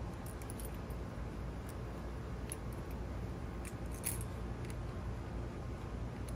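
Faint, scattered metallic clicks and clinks from hand-threading small bolts and handling wire hold-down clips on a CVT transmission valve body, the sharpest about four seconds in, over a steady low hum.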